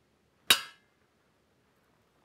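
A single sharp metallic clink with a short ring about half a second in, as the rifle's trigger pack is handled in an enamel tray of kerosene.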